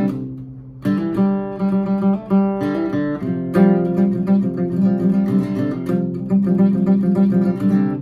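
Steel-string acoustic guitar playing the song's riff, rocking back and forth between a Csus chord shape and the same shape with the pinky lifted, so one note on top changes while the rest ring. There is a brief lull just after the start, and the playing picks up again about a second in.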